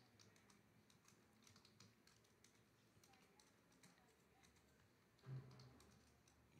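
Faint computer keyboard typing: scattered soft key clicks with short pauses. A brief low hum sounds near the end.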